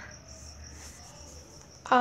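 A pause in a woman's narration, with a faint, steady high-pitched background noise; her voice comes back right at the end.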